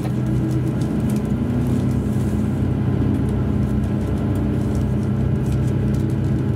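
Diesel engine of a JR Hokkaido KiHa 283 series tilting diesel railcar heard from inside the car, a steady low drone under power as the train pulls out through the station. One tone in the drone rises slightly about a second in.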